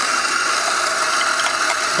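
Coffee grinder running, grinding home-roasted espresso-blend beans: a steady, even grinding noise with no break.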